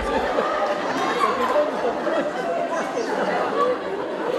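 Several people talking over one another, their voices overlapping steadily.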